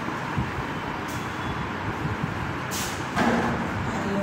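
Steady background noise with a low rumble and a hiss. A brief high hiss comes nearly three seconds in, then a louder, fuller sound begins shortly after.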